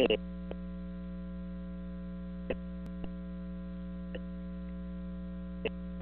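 Steady electrical mains hum on a caller's telephone line, a low hum with a buzz of overtones above it, broken by a few faint ticks.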